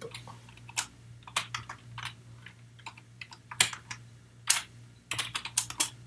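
Typing on a computer keyboard: scattered, irregular keystroke clicks with short pauses between them, a few louder presses in the middle and a quick run of keys near the end.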